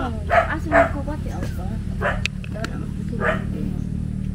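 A dog barking a few short barks, spread out over a few seconds.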